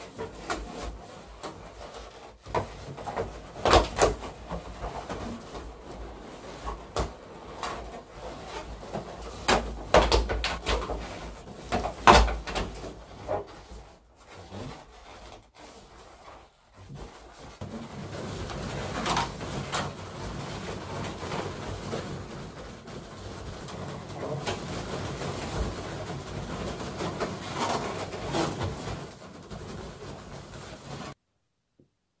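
Latex balloons squeaking and rubbing against each other as balloon clusters are handled and fitted onto a balloon ring, with a few sharper knocks in the first half and steadier rubbing in the second half.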